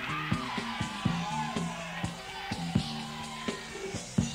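Live rock band playing in a club, with bass notes, drum hits and bending melodic lines over them, captured on an audience cassette recording.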